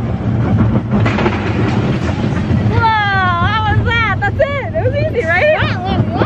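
Small family roller coaster train running along its track, a low rumble with a rushing noise. From about three seconds in, riders let out high shrieks that slide down in pitch, several in a row.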